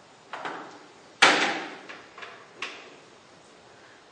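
Plastic buckets being put down and picked up: a loud hollow knock about a second in, with a few lighter knocks and handle clatters around it.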